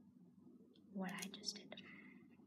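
A girl's brief whispered, breathy utterance about a second in, followed by a small click near the end.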